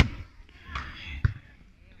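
A volleyball struck by a player, a single sharp smack a little over a second in, preceded by a brief sharp click at the very start.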